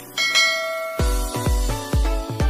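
Notification-bell chime sound effect: a bright bell ding just after the start, ringing for about a second. It is followed about a second in by music of plucked notes over deep bass notes.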